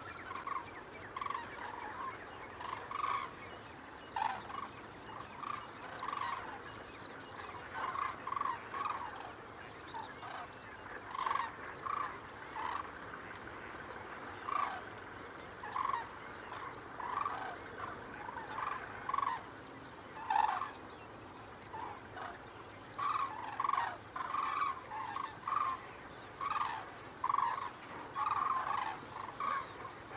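Fowl calling over and over, with short calls in irregular clusters that grow busier in the last third.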